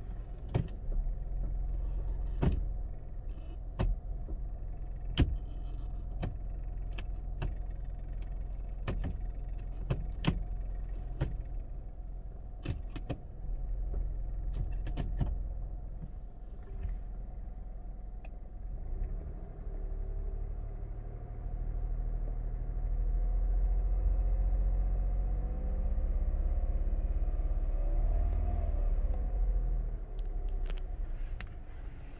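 Kia Morning's gasoline engine idling, heard from inside the cabin, with scattered sharp clicks over it. About two-thirds of the way in the engine is revved and held louder, at around 2,000 rpm, with the pitch rising and falling near the end.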